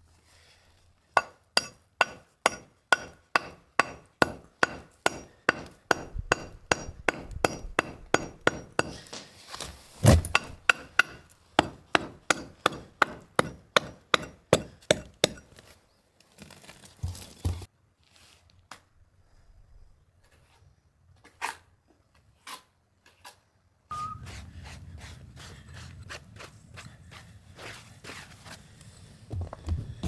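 A hammer striking metal in a steady run of even blows, about three a second, with a faint metallic ring. It is typical of work on the brick pillar's masonry. The blows stop about halfway through, a few scattered knocks follow, and a low steady hum sets in near the end.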